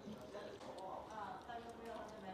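Faint, indistinct voices of other diners in a small noodle restaurant, with light eating noises: noodles slurped and chopsticks tapping a bowl.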